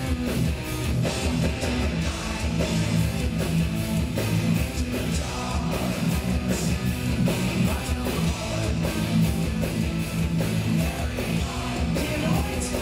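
Heavy metal band playing live: distorted electric guitars, bass and drums in an instrumental passage, heard from the audience.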